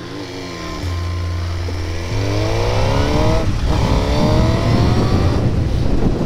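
Suzuki sportbike's inline-four engine accelerating hard: the revs climb through a gear, drop briefly at a shift about three and a half seconds in, then climb again, with rising wind and road noise as speed builds. Heard from the rider's position through a microphone inside the helmet.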